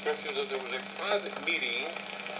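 A voice from a shortwave AM broadcast, played through the small built-in speaker of a HamGeek DSP-01 software-defined radio receiver. Beneath it runs a steady low hum, and a brief whistle sounds near the end.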